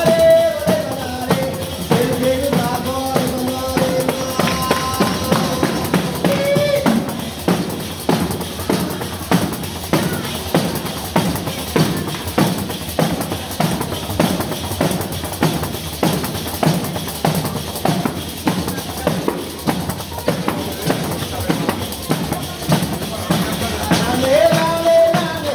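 Southern Italian folk dance music played on several tamburelli, frame drums with jingles, in a steady fast beat. A singing voice is heard over the drums for about the first seven seconds, then the drums carry on alone.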